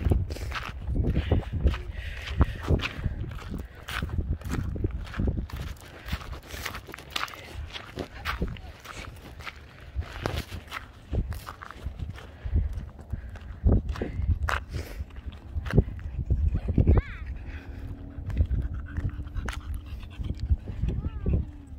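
Footsteps crunching irregularly on a gravel trail as people walk, with dogs alongside.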